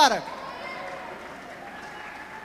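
Congregation praying aloud at once, a steady hum of many voices; right at the start a man's voice drops off in a short falling cry.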